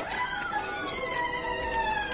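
Eerie horror-film score: several held tones slowly sliding downward in pitch together.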